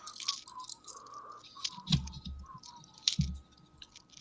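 Scattered light clicks and handling noises from nickels being handled and sorted by hand, with two soft low thumps about two and three seconds in.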